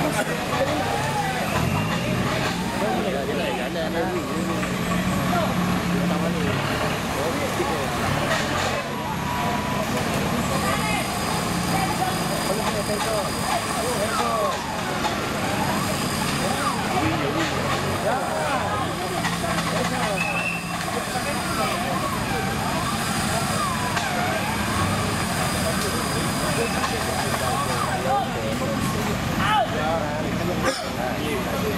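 A competition off-road 4x4 hauling itself up a steep muddy bank on its winch line: a steady motor drone that shifts in pitch now and then, under many voices talking and calling out.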